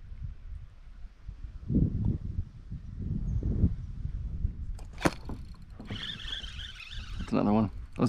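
Low knocks and rumbling handling noise on a plastic kayak, a sharp click about five seconds in, then a steady high buzz from the spinning reel over the last two seconds, with a short voiced exclamation near the end as a fish is hooked.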